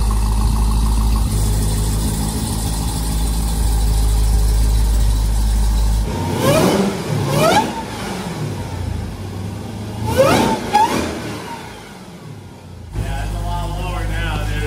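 Jeep Grand Cherokee Trackhawk's supercharged 6.2-litre Hemi V8, fitted with a smaller supercharger pulley, idling with a steady low drone. About six seconds in it is revved in two pairs of quick blips, each a rising sweep in pitch, and then settles back to idle near the end.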